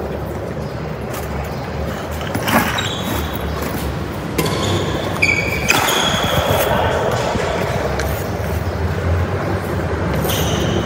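Doubles badminton rally in a large hall: a few sharp racket strikes on the shuttlecock and brief shoe squeaks on the court mat, over a steady low hum.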